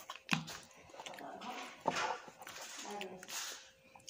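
Children eating noodles with chopsticks: two sharp clicks and two short hissing slurps, with quiet murmured voices.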